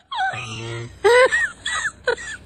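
A woman wailing in grief, in short high cries that fall sharply in pitch.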